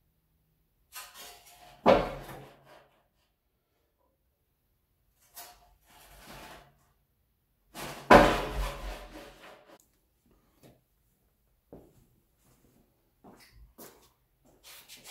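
Steel strongman lifting frame loaded with two large tires being lifted and set down hard on a concrete floor: a loud heavy metallic thud about two seconds in and another about eight seconds in, each with a short rattling decay, and lighter knocks between.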